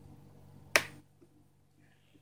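A single sharp click about three quarters of a second in, with a short fading tail: the small lock over the display's flex-cable connector on a Samsung Galaxy J5 Prime snapping into place so the connector cannot come off.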